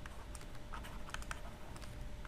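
Faint light tapping and scratching of a stylus on a pen tablet as maths is handwritten.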